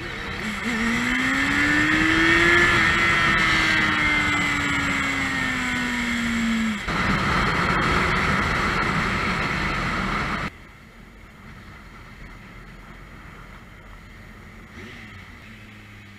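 Motorcycle engine and wind rush heard from on board the moving bike: the engine note rises over the first two to three seconds, then slowly falls. It breaks off abruptly into a steady rush of wind and engine, and about ten seconds in it drops suddenly to a much quieter, low engine sound.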